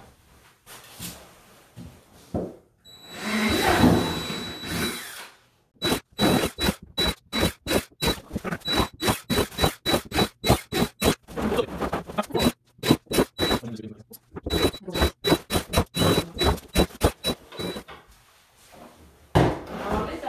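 Cordless drill boring holes through the plastic rim of a Pelican Trek 60 sled, the second pass with a larger bit to enlarge the holes for rope. A longer run with a high motor whine comes about three seconds in, followed by many short bursts of drilling, about four a second, until near the end.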